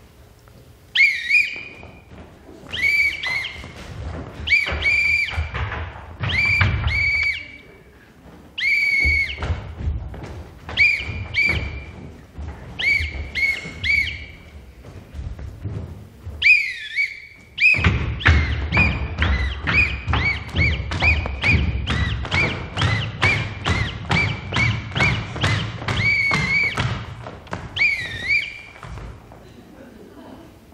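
A signal whistle blown in short patterned calls, its notes sliding and bending, over the stamping of marching footsteps thudding on a wooden stage floor. After a pause past the middle, the whistle notes and steps come in a fast, steady run.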